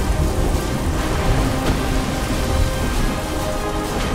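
Storm sound effects: rain with thunder and a deep continuous rumble, under music holding sustained notes.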